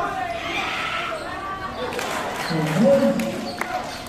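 Basketball dribbled on an outdoor concrete court: a run of sharp bounces in the second half, mixed with the voices of players and spectators.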